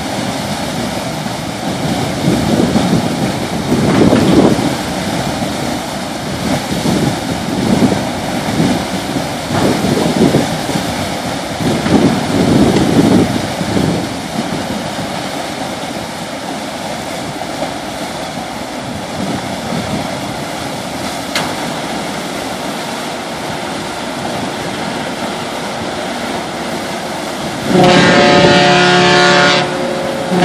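Steady rush of water churned up by the S.S. Badger's propeller wash as the car ferry eases into its slip, swelling louder several times in the first half. Near the end the ship's horn gives one long blast of about two seconds.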